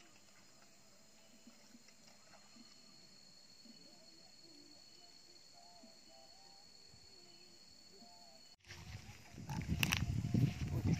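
Faint pond-side ambience with a thin steady high tone and faint wavering distant calls, then, about eight and a half seconds in, a sudden jump to much louder water splashing and sloshing around a landing net as a hooked fish is lifted from the water.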